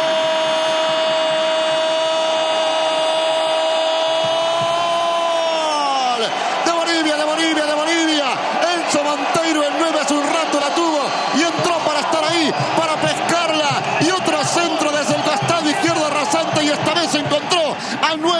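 A sports commentator's long sustained goal shout ("¡Gol!"), one held high note lasting about six seconds that drops in pitch as it ends, greeting a goal just scored. After it come loud, excited voices with quickly wavering pitch.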